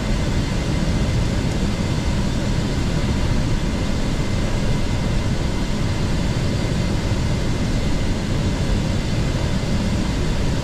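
Steady in-flight cabin noise in the cockpit of a Gulfstream G650 business jet, airflow and engine noise heaviest in the low end, with a couple of faint steady tones above it.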